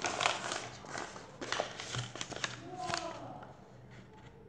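A sheet of paper rustled and handled right against the microphone: a run of irregular crinkling scrapes and clicks that dies away near the end.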